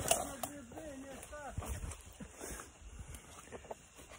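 Faint speech, much quieter than close talk into the phone.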